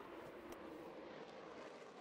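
Faint, steady jet engine noise from an F-16 fighter climbing away after take-off, low in the mix.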